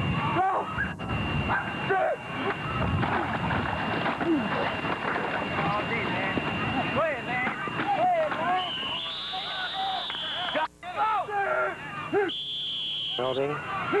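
Many voices shouting and talking over one another on a football field, with nothing clearly spoken. A high, steady whistle blows twice in the second half, the second blast shortly before the play is called dead.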